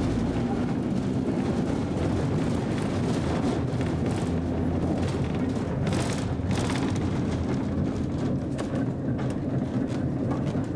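1898 Brownell convertible streetcar rolling along its track, heard from inside the car: a steady rumble of wheels and running gear, with a brief harsher burst of noise about six seconds in.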